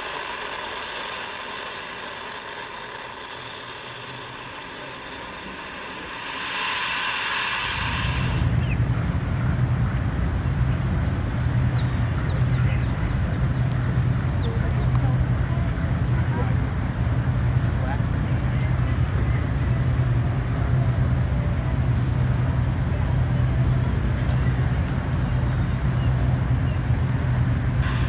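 A faint steady hiss that brightens for a moment about six seconds in, then a steady low engine drone with a constant hum from about eight seconds in to the end.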